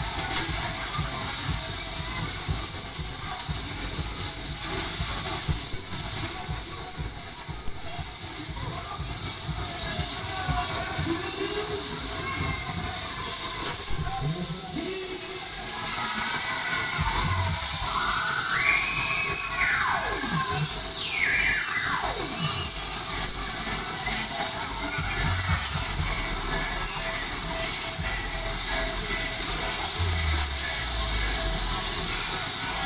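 Funfair ride in motion amid general fairground noise. A steady high-pitched squeal runs through roughly the first half. About two-thirds of the way in come two long falling glides in pitch.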